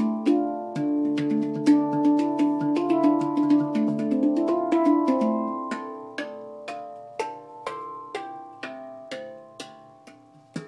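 GAIA handpan, a 9-note steel hand drum tuned to the 'Sunset' scale (D) A C D E F G A, played with the hands. Struck notes ring on and overlap in a busy run, then thin out to single strikes about half a second apart, growing quieter toward the end.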